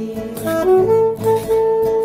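Saxophone playing an instrumental fill between sung lines over acoustic guitar accompaniment, stepping up to a long held note.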